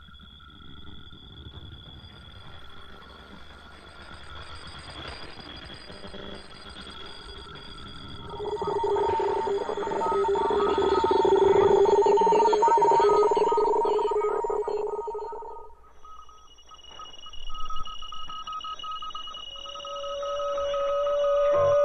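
Shortwave radio sounds worked into an electronic composition: steady whistling tones at several pitches over hiss and static. About eight seconds in, two lower tones swell up loudly and hold, then drop away near sixteen seconds, leaving thinner high tones.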